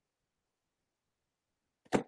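Near silence, then one brief sharp click near the end.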